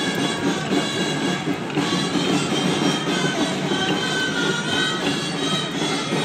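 Live outdoor band music for a Catalan stick dance: a high, reedy wind melody held over drums, with the dancers' wooden sticks clacking faintly now and then.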